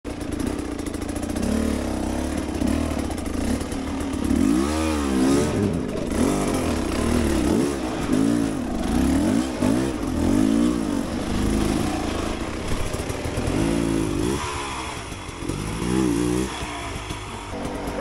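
Beta 300 two-stroke enduro motorcycle engine revving up and dropping back in short throttle blips about once a second, the stop-and-go throttle work of picking a line over rocks at low speed.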